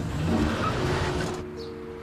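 Car engine and road noise, fading away over the first second and a half, as of a car driving off. Music comes in with a few held notes.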